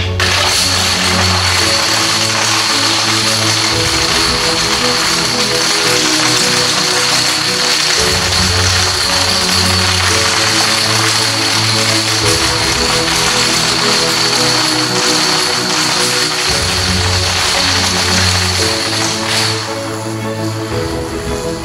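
Dense, continuous clatter of thousands of plastic toy dominoes toppling in a chain through stacked walls, under background music with a bass line that changes every few seconds.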